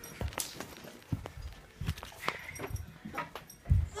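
Handling noise from a phone camera being swung and moved about: irregular low thumps and rustles with a few sharp knocks, the loudest thump just before the end.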